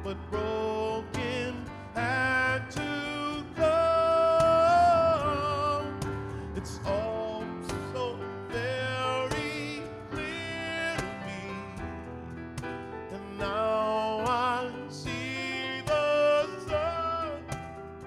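A male jazz vocalist singing slow, drawn-out phrases with vibrato over grand piano chords; the loudest is a long held note about four seconds in.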